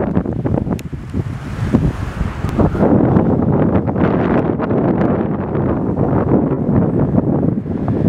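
Gusty wind buffeting the camera microphone, a loud, uneven rumbling rush that rises and dips from moment to moment.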